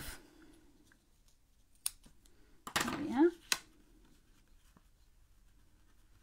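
Scissors snipping the loose ends of linen twine: two short, sharp snips about a second and a half apart.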